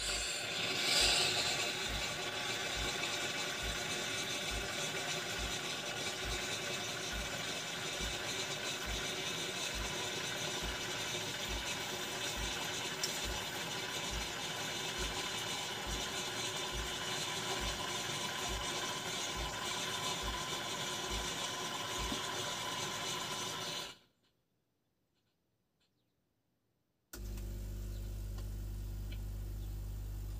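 Automatic espresso machine frothing milk into a mug: a steady hiss with a soft low pulse a little over once a second, stopping about 24 s in. After about three seconds of near silence, the machine's pump starts a steady low hum as it begins brewing espresso.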